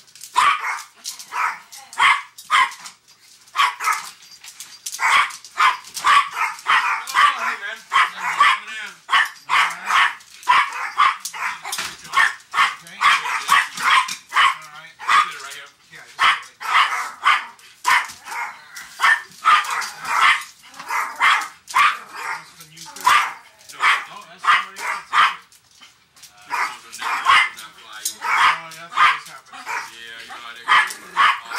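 Several dogs barking, sharp barks a few per second in continuous volleys with only brief lulls.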